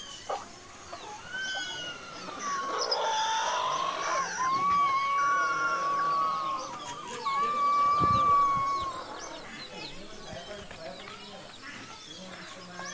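Rooster crowing twice: a long crow that builds up and ends in a drawn-out steady note, then a second, shorter crow about seven seconds in. Faint high chirps of other birds run underneath.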